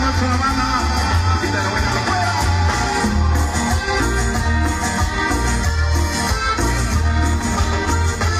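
Live band dance music played loud through a concert sound system, with a pulsing bass line under keyboards and guitar.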